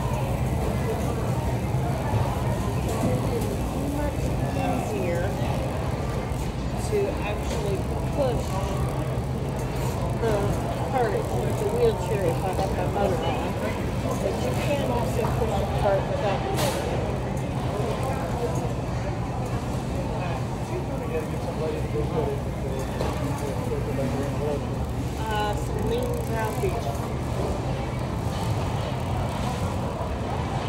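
Shopping cart and manual wheelchair wheels rolling on a hard store floor with a steady low rumble, under background voices.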